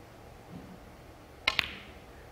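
A snooker shot: two sharp clicks about a tenth of a second apart, about one and a half seconds in, from the cue tip striking the cue ball and the balls striking each other.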